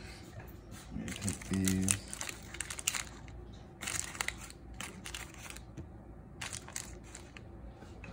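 Aluminium foil crinkling in several short spells as hands scoop cubes of cheese off it, with a brief murmur of voice early on.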